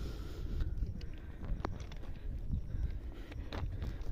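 Wind rumbling on the microphone, with a few faint clicks.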